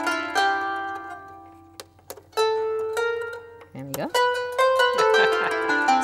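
Qanun strings plucked one note at a time with metal finger picks, each note ringing on with long natural reverberation. She is sounding out the major scale the instrument is tuned to with its metal levers, and a couple of light clicks come about two seconds in.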